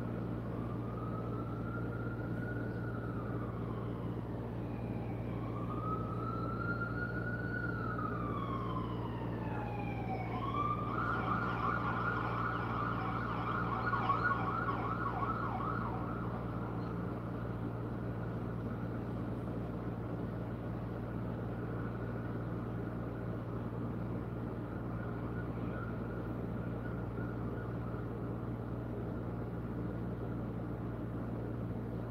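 Emergency-vehicle siren going by: two slow rising-and-falling wails over the first ten seconds, then a fast warbling yelp that dies away about halfway through, over a steady low hum.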